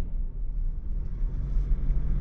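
Steady low road and engine rumble inside the cabin of a Ford Ranger pickup rolling at about 30 km/h.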